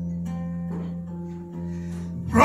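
Acoustic guitar played live, a low chord left ringing with a few soft picked notes over it.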